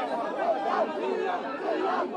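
A man speaking to the press, with the chatter of a crowd of other voices around him.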